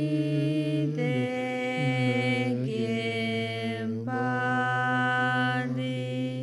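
Slow Tibetan Buddhist prayer chanting: a low voice draws out long, held notes, stepping to a new pitch every second or two, with brief pauses between phrases.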